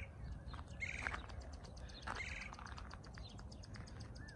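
A small bird chirping, three short calls about a second apart, over a low outdoor rumble.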